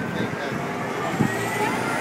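City street traffic running steadily past, mixed with indistinct chatter from a crowd of people.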